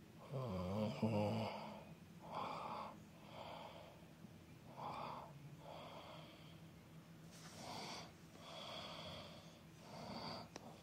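A man's heavy breathing: a run of loud breaths and gasps about once a second, with a voiced moan about half a second in.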